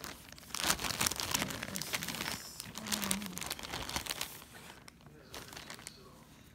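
Clear plastic zip-top bag and the fabrics in it crinkling and rustling as the pieces are handled and pulled out. The crackling is busiest for the first four seconds, then thins out.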